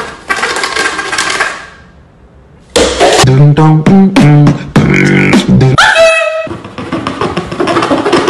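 Mouth-made sound effects, beatbox-style. A hissing burst is followed by a short pause, then a run of short hummed tones stepping up and down, a rising glide, and another hiss.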